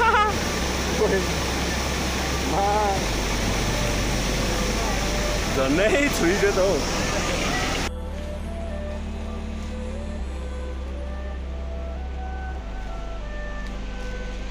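Rushing stream water with people calling out a few times, under background music with a steady bass line. About eight seconds in the water cuts off suddenly and only the music continues.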